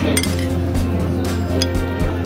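Background music, with a metal spoon clinking against a plate twice: just after the start and about a second and a half in.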